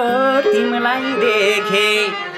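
Nepali lok dohori folk song: a man singing a melismatic folk melody over instrumental accompaniment.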